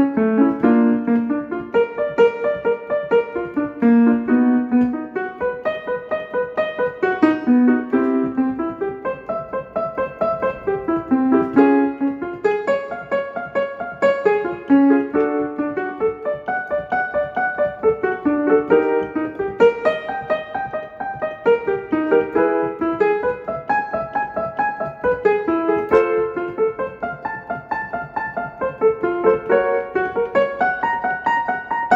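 Piano playing a short warm-up pattern of quick notes, repeated about every three and a half seconds and moved up a step each time. It is the accompaniment to a staccato vocal exercise, leaving the singing to the listener.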